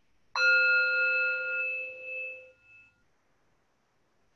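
A meditation bell struck once, ringing with several clear tones that fade away over about two and a half seconds; one of the nine bells opening the practice period.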